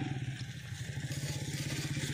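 An engine running steadily with a fast, even chug.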